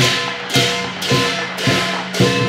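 Lion dance percussion playing a steady beat: drum hits with cymbal crashes about twice a second.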